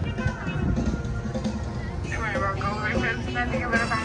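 Music with a singing or speaking voice, over a steady low rumble from the boat's motor.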